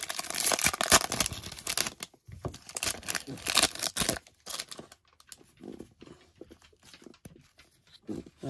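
Plastic wrapper of a Topps baseball card pack being torn open and crinkled: dense crackling for about two seconds, then scattered crinkles, fading to soft rustling of the cards and wrapper being handled.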